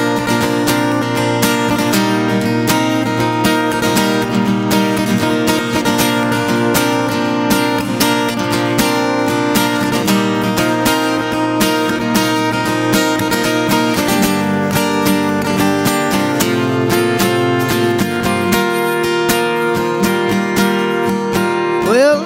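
Solo acoustic guitar strummed in a steady, even rhythm, with no voice, the chords changing a couple of times in the second half.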